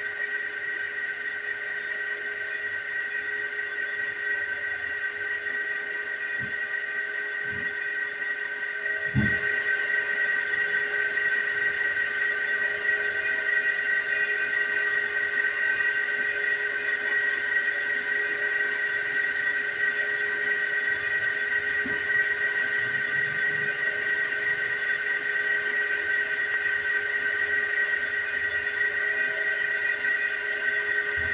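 A steady high-pitched whine made of several held tones, with a few low thumps about six to nine seconds in, after which the whole sound gets louder.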